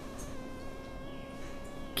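A faint, steady background hum made of several even, unchanging tones, with no speech over it.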